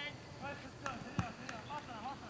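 Football players calling out across the pitch, with a single dull thump of a ball being kicked about a second in and a couple of faint sharp clicks.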